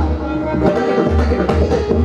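Pakhawaj drumming: fast, dense strokes with a deep booming bass head, over a harmonium holding a steady repeated melody (lehra).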